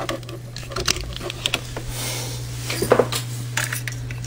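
Scattered light clicks and knocks of hands handling a telephone and its plug while the phone on the line is swapped over, over a steady low hum.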